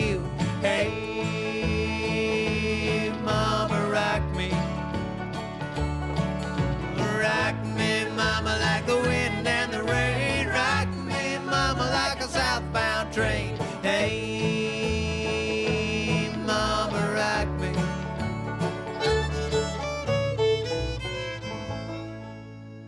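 Bluegrass string band playing an instrumental passage with no singing: fiddle, banjo, guitar and upright bass. It begins to fade near the end.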